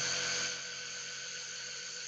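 Vacuum pump running steadily, drawing the air out of a granule-filled BodyMap postural cushion so that the cushion stiffens and holds its moulded shape.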